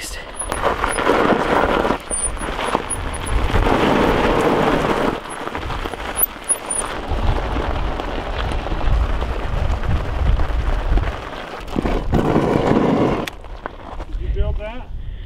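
Loose gravel crunching under the fat tires of an electric off-road wheelchair as it rolls downhill on rear brakes only, its rear tires sliding a little in the gravel. A low rumble runs underneath, and the crunching comes in stretches.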